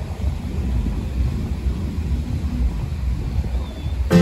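Wind buffeting the microphone: an uneven low rumble with no clear tone.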